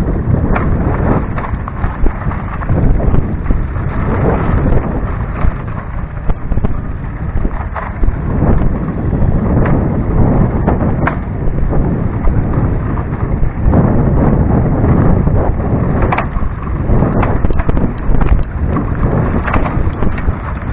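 Wind buffeting a ride-mounted camera's microphone as a mountain bike runs fast down a loose gravel road, with frequent sharp rattles and knocks from the bike jolting over stones.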